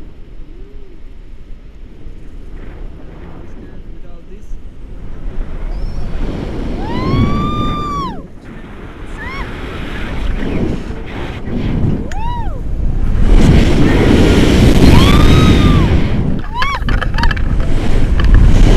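Wind buffeting the microphone of a camera on a tandem paraglider, growing much louder in the second half as the glider banks into steep turns. Several short high-pitched whoops rise and fall over it.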